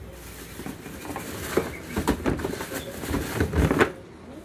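Hands rummaging in a cardboard box: plastic wrapping rustling and irregular knocks and scrapes against cardboard as a plastic bottle is pulled out, busier and louder in the second half.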